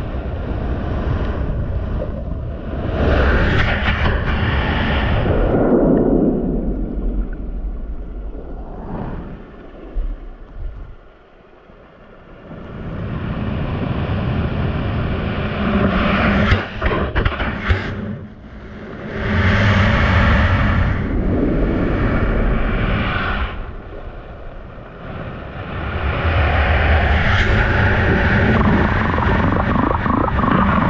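Surf heard from a camera lying underwater in the shallows: churning water rumbling in surges that swell and fade every few seconds as waves wash over it, with a lull about eleven seconds in. A few sharp knocks come around sixteen to eighteen seconds in, as sand or the camera's rig is knocked about.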